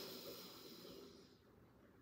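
A faint inhale through one nostril, the other held shut by a finger, during alternate-nostril yoga breathing. It fades out about a second and a half in.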